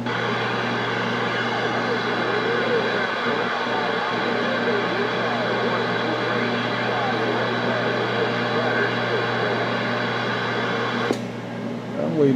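Galaxy radio receiver putting out steady band static with faint, garbled distant voices under it, as the channel is left open between calls. The static cuts off suddenly about eleven seconds in.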